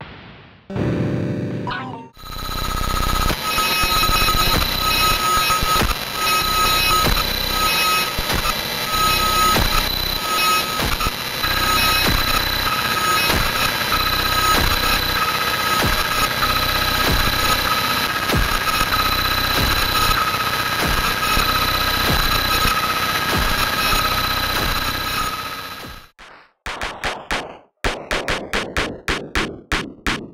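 Harsh noise music: about two seconds in, a dense, steady wall of distorted noise starts, with high sustained tones running through it. Near the end it cuts to a different piece made of a rapid stutter of short pulses, several a second.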